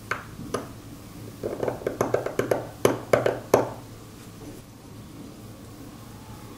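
A steel seal-carving knife cutting and chipping into the face of a Qingtian seal stone: two sharp ticks near the start, then a quick run of crisp clicks and short scrapes lasting about two seconds that stops a little past halfway.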